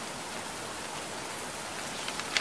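A steady, even hiss like falling rain.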